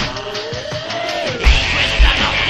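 Live rock band with electronics playing between sung lines: the kick drum drops out for about a second and a half while a single note slides up and back down, then the drums and full band come back in near the end.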